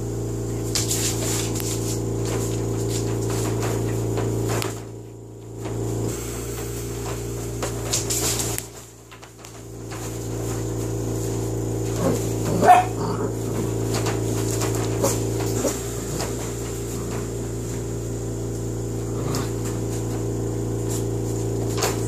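A dog's short, high yelp about halfway through, with scattered light clicks, over a steady low hum.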